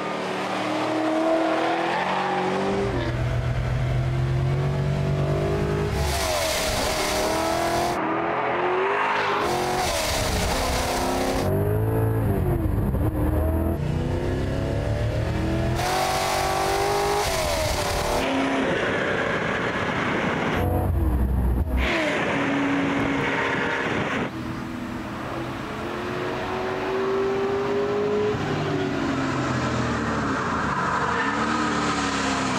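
Mid-1960s Chevrolet Corvette's built 400 small-block V8 being driven hard around a race track. It revs freely, and its pitch climbs and falls again and again through gear changes and corners. The sound jumps abruptly every few seconds between close and more distant recordings of the car.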